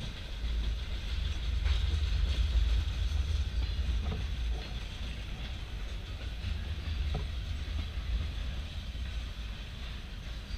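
Empty freight cars rolling past on the rails with a steady low rumble of steel wheels on track, with a few faint clicks as wheels cross rail joints.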